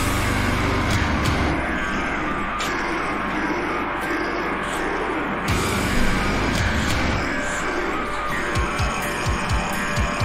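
Heavy metal song from a band recording, with a dense, heavy low end. A deep falling boom comes about halfway through, and a rapid run of drum hits starts near the end.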